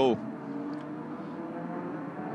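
Race car engine accelerating at a distance: a steady engine note that rises slightly in pitch.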